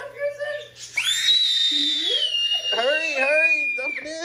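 A young child's long, high-pitched shriek starting about a second in and held for about three seconds, slowly falling in pitch, with another person's voice talking or laughing underneath.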